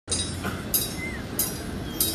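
A school band's cymbals crash twice, each ringing briefly, over a steady low rumble.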